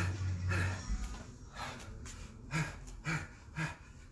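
Hard breathing from exercise: a string of short, forceful exhales, about one every half second to second, from a person working through squats and skipping side kicks.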